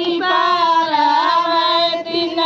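A high singing voice holding long, wavering notes with ornamented turns in pitch, a song laid over the picture.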